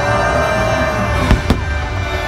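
Fireworks going off: two sharp bangs about a fifth of a second apart, a little past the middle, over steady music.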